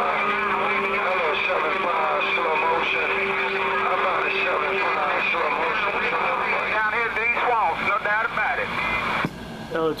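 CB radio base station receiving skip: distant voices come through garbled and overlapping under static, with a steady heterodyne whistle, and a lower tone for about the first five seconds. The received signal cuts off sharply about nine seconds in.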